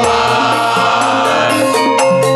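A group of men singing a Javanese sholawat devotional song together through microphones, holding long notes over musical accompaniment.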